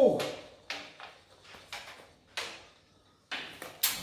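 A chalk line reel being wound in by hand: a string of short, irregular scraping strokes, about one every half second, as the line is drawn back into the case.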